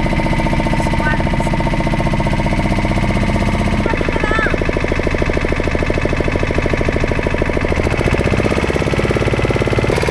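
Motor of a small wooden river boat running steadily under way, a fast even pulsing with a slight change in its note about four seconds in and again near eight seconds.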